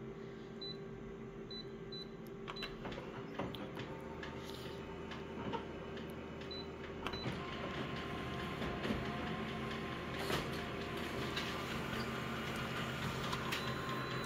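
Office multifunction copier making a copy. Its motors and fans run with a steady hum that grows fuller a few seconds in, with scattered clicks and a faint steady whine as it scans and prints the page.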